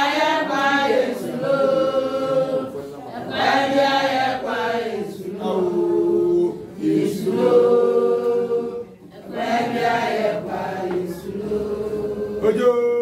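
A group of voices singing together in long held phrases, with a brief break about nine seconds in.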